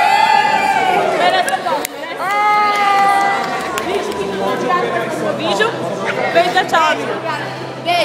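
A woman singing unaccompanied, holding two long notes in the first half, amid the chatter of a small group of women.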